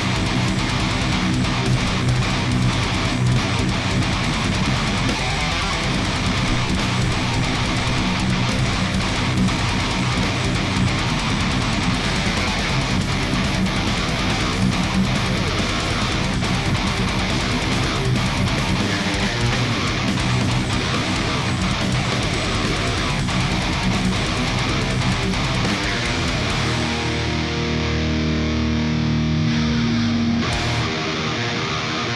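Heavy metal song played on a distorted electric guitar along with a loud full-band backing track of drums and bass. Near the end the music thins to steadier held notes.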